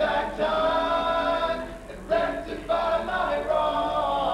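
Male a cappella group singing boy-band-style close harmony without words: long held chords that fall away briefly just before two seconds in, then come back in.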